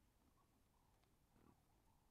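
Faint sounds of a zebra grazing, with one short, low sound about one and a half seconds in.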